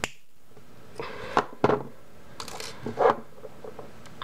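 Small wire cutters snipping through a thin metal eye pin, a short sharp snip at the very start, followed by a few light clicks and taps as the cut pin and the cutters are handled.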